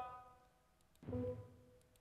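Short 'da' syllables played through a loudspeaker: a recorded speech sound and the brain's electrical response to it, turned back into sound. A steady pitched tone fades out over the first half second. About a second in comes a second, lower and buzzier 'da'.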